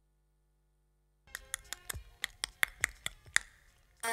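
A quick, irregular run of about a dozen sharp taps or clicks, starting a little over a second in and stopping shortly before the end, with dead silence before them.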